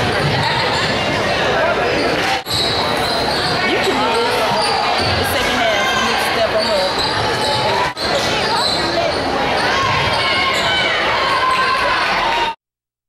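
Live sound of a basketball game in a gymnasium: spectators talking and calling out, with a basketball bouncing on the court, all echoing in the hall. The sound drops out for an instant twice, about two and a half seconds in and again about eight seconds in.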